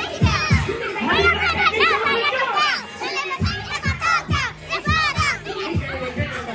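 Hip hop music playing loudly over a club sound system, with women's voices singing and shouting along over it. The heavy bass beat drops out about a second in and comes back in some two seconds later.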